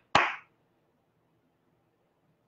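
A single sharp hand clap right at the start.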